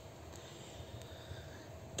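Faint, steady outdoor background noise with no distinct sound events.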